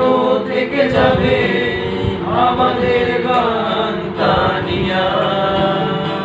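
Informal singing by young men's voices, with an acoustic guitar accompanying.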